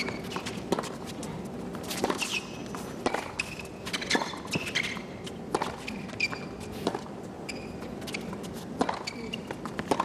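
Tennis rally on a hard court: the ball is struck back and forth with rackets, a sharp hit every one to two seconds. Short high chirps of shoes squeaking on the court come in between the shots, over a quiet, hushed crowd.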